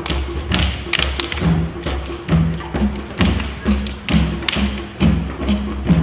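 African hand drums (djembes) played by a drumming ensemble, keeping up a steady rhythm of deep bass strokes and sharp slaps, about two strong beats a second.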